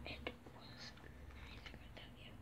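Faint whispering with a few light clicks in a quiet room.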